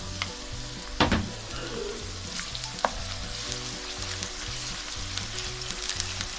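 Chopped onion, garlic and freshly added grated ginger sizzling in hot oil in a nonstick wok while being stirred with a slotted spoon. There are two sharp clicks, about a second in and near three seconds.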